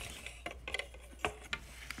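Plastic LEGO bricks clicking and knocking against each other as a built model is handled, about half a dozen light, separate clicks.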